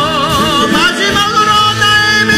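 A worship band and singers perform a Korean praise song. A voice with wide vibrato is heard at first, then long held notes, over steady instrumental accompaniment.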